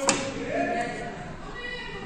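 A single sharp knock right at the start, followed by indistinct speech-like voices at a lower level.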